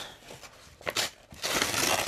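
Brown kraft-paper mailer envelope rustling and crinkling as it is handled open and reached into: a brief crinkle about a second in, then a longer, louder rustle near the end.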